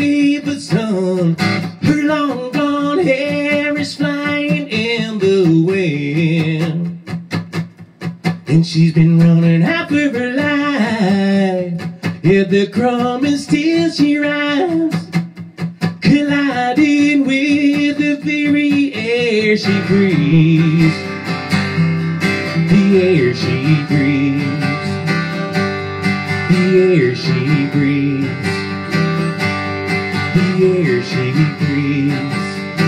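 A man singing over a strummed acoustic guitar. About two-thirds of the way in, the voice stops and the guitar plays on alone.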